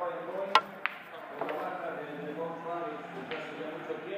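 Pool shot: a sharp click of cue and balls striking about half a second in, a second click of balls colliding a moment later, and a fainter knock about a second after, over the chatter of people talking in the hall.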